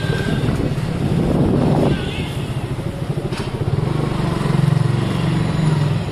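A motor vehicle engine running close by, louder from about four seconds in, with voices in the background.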